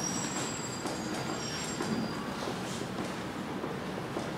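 Dry-erase marker squeaking on a whiteboard as it writes, thin high squeals that die away about two seconds in, over a steady hiss.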